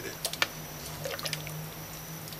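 Stew being spooned into a ceramic bowl: a few light clicks in the first half second and fainter wet sounds after, over a steady low hum.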